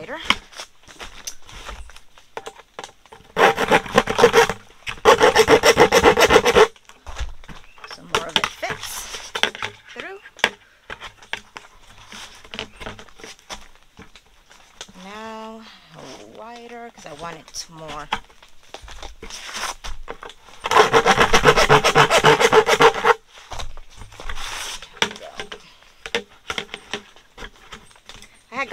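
A cutting tool working into the rim of a plastic five-gallon bucket to widen a slit, in three rasping bursts of one to two and a half seconds each: two close together a few seconds in and one about three-quarters of the way through. Quieter handling of the bucket fills the gaps.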